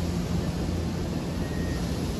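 Steady low rumble and hum of a railway station: running trains and equipment around the platforms, with no single event standing out.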